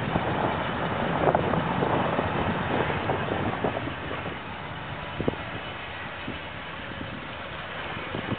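Wind buffeting the camera's microphone over a low outdoor rumble. It is louder for the first few seconds, then eases, with a few faint short knocks.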